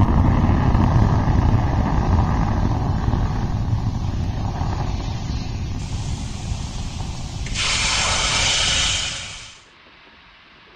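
Firefly Alpha rocket's first-stage engines rumbling during ascent, the low rumble slowly fading as the rocket climbs away. About seven and a half seconds in, a brighter hiss rises and holds briefly, and then the sound dies away about nine and a half seconds in.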